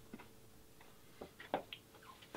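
A few faint, scattered clicks and ticks over a faint steady hum.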